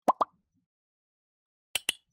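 Short sound-effect pops and clicks over silence: two quick pops a tenth of a second apart at the start, then a sharp double click near the end, as made by a subscribe-button pop-up animation with a clicking cursor.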